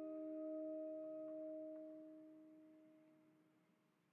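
Background music ending on a held chord of steady, bell-like tones that slowly dies away, fading almost to nothing by the end.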